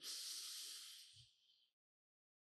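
A slow breath drawn in through the nose close to a microphone, a soft hiss that fades out after about a second.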